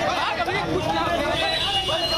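A crowd of many voices talking and calling out over one another, with no single voice standing out.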